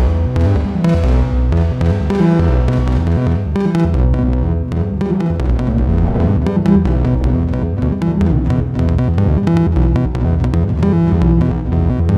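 Make Noise Eurorack modular synthesizer playing a sequenced electronic patch: low bass notes stepping in a repeating pattern with pitched tones above. About three and a half seconds in, a run of rapid clicky ticks joins.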